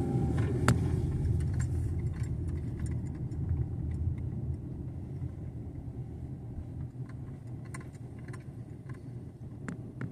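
Car cabin noise of a car driving slowly: a steady low road and engine rumble that gradually gets quieter, with scattered light clicks from inside the car.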